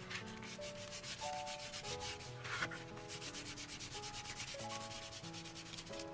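Paper being rubbed down with quick back-and-forth strokes, several a second, strongest in the first few seconds and lighter after. Gentle background music plays underneath.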